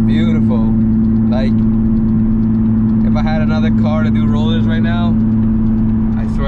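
Car's engine and road drone heard from inside the cabin at a steady highway cruise, holding one even pitch without revving. A voice is heard over it in places.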